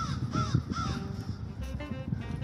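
A bird gives three short, harsh calls in quick succession, each rising then falling in pitch, over background music.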